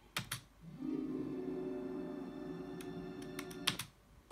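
Opening music of a film trailer, one steady held low chord, heard through a device's speaker. A couple of sharp clicks come just before the music starts and a few more near the end.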